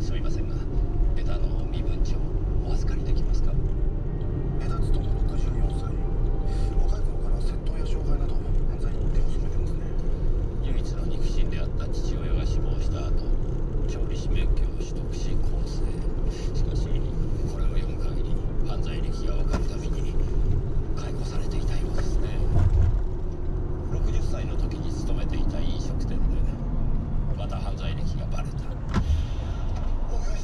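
Steady low rumble of a car driving, heard inside the cabin, with a voice talking over it.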